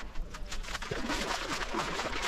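Shallow seawater splashing and sloshing around the legs of someone wading into the sea, getting louder and busier about half a second in.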